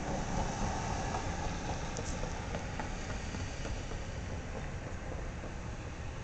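Steady outdoor background noise: a low rumble with hiss and a few faint clicks.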